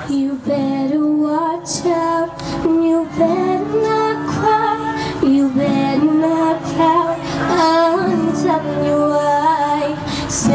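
A woman singing live into a microphone, accompanying herself on an acoustic guitar with held chords under the melody.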